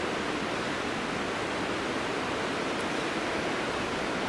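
Mountain waterfall cascading down a rock face: a steady, unbroken rush of falling water.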